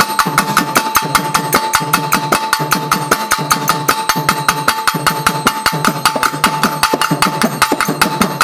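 Pambai drum ensemble playing a fast, driving rhythm of about ten stick strokes a second, the instrumental lead-in of a Tamil Amman devotional song. A steady ringing tone holds underneath the drumming.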